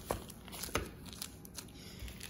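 Plastic bag around a wax melt bar crinkling as the bar is set down on a countertop: a few short rustles and light taps, one near the start and another just under a second in.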